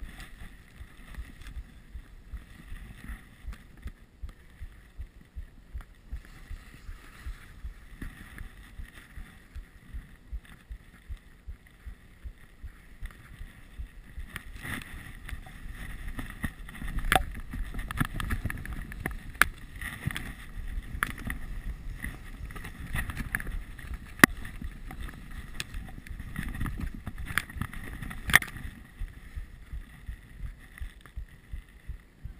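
Telemark skis swishing through powder snow with wind on the microphone, louder from about halfway through. A faint regular ticking about twice a second in the first half, and several sharp knocks in the louder second half.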